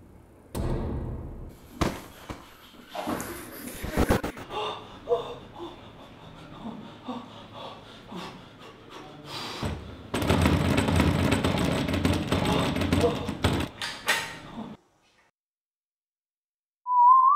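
Thuds and knocks as on a door, mixed with a voice, then a louder stretch of noise for about four seconds that cuts off suddenly near the end.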